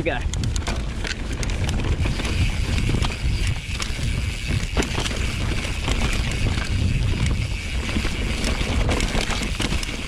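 YT Capra full-suspension mountain bike rolling down a dirt trail: tyre noise over the ground as a steady low rumble, with frequent sharp clicks and rattles from the bike.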